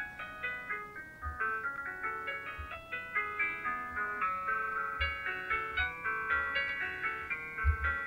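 A keyboard recording made on a Bechstein Vario Duet digital silent system playing back from the Vario app: a fast, continuous run of high notes.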